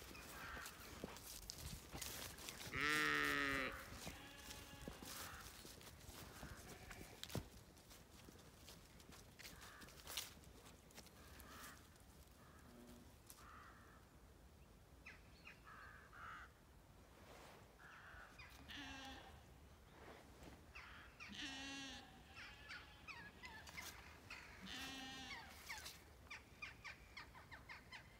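Zwartbles sheep bleating: one loud, wavering bleat about three seconds in, then several fainter bleats from the flock later on.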